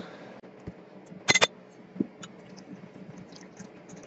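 A few light clicks of laboratory glassware being handled at a separatory funnel, the loudest a short cluster about a second and a half in and a smaller one about two seconds in, against a quiet room.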